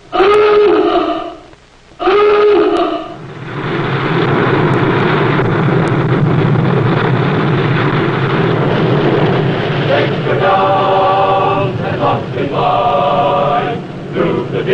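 Two blasts of a submarine diving-alarm klaxon, each about a second long. Then a steady rush of water and air as a submarine surfaces, with music of held chords coming in about ten seconds in.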